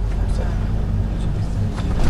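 Steady low engine and road rumble heard inside a minibus cabin while it drives, with faint voices over it.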